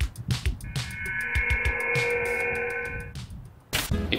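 Star Trek-style transporter beam sound effect: a held chord of several steady tones, lasting about two seconds, over background music with a steady beat. A short sharp burst comes near the end.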